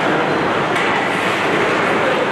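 Steady, loud ice-rink game noise: skate blades scraping the ice as players skate through the neutral zone, mixed with the general din of the arena.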